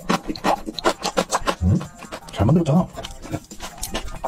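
Close-miked chewing: a person eating, with many small wet mouth clicks. A short, low murmured voice sounds twice, about one and a half and two and a half seconds in.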